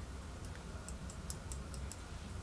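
Faint, irregular light clicks and ticks from a makeup brush and products being handled, about eight in two seconds, over a low steady hum.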